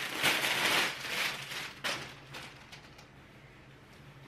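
Clear plastic packaging bag crinkling and rustling as it is pulled open and a quilted jacket is drawn out. The crinkling is loud for about two seconds, with a sharp snap near the middle, then dies down to faint handling.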